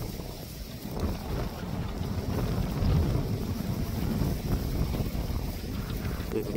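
Wind blowing across the microphone: a low, uneven rumble that swells and eases.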